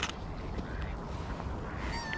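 Waterbirds calling on a lake, ducks and gulls, over a steady outdoor background. A sharp click comes right at the start, and a bird call gliding down in pitch begins just before the end.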